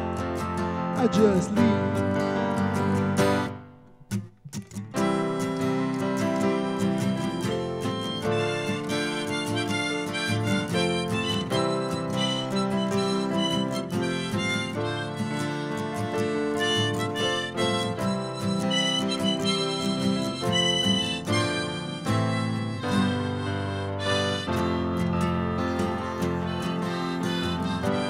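Live acoustic guitar and Yamaha digital piano with harmonica played from a neck rack. The music drops almost to silence for about a second, some four seconds in, then comes back with harmonica over the piano.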